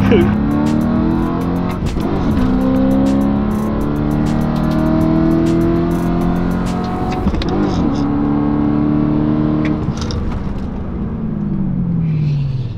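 BMW E92 M3's V8 with its valved exhaust open, accelerating hard through the gears, heard from the cabin: the engine pitch climbs steadily, drops at gear changes about two and seven and a half seconds in, and falls away near the end as the car brakes hard.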